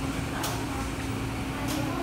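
Food-court room tone: a steady hum under an even background noise, with a few faint clicks.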